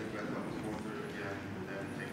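Low, indistinct murmured voices in a lecture hall.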